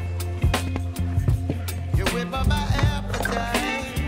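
Background music with a steady bass line and a regular drum beat.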